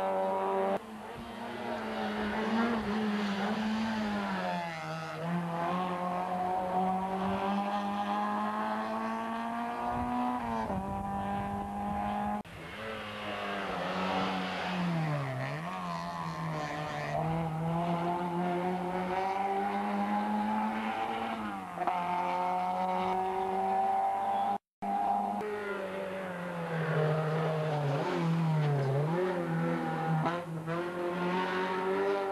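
Rally car engines at full throttle, revving up through the gears as each car passes. The pitch climbs steadily and drops sharply at each gear change or lift for a corner. The sound breaks off abruptly a few times where one car gives way to the next, with a brief dropout near the end.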